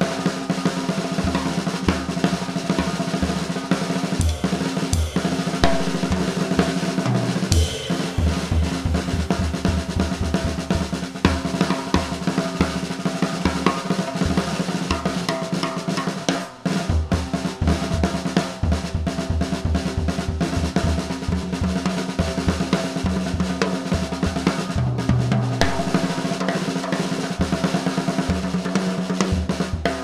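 Jazz drum solo on a Yamaha drum kit, busy snare, bass drum, hi-hat and cymbal strokes, with a short break about halfway. An upright bass holds low notes underneath, changing pitch a couple of times.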